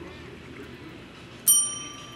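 A single bell ding about one and a half seconds in: a sharp strike with a bright ring that fades within about half a second, over faint room noise.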